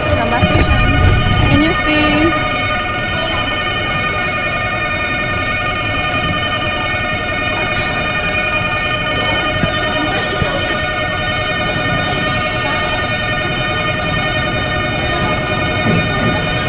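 Railway station platform sound as an express train approaches: a steady hum of many held tones runs throughout, with a brief voice near the start.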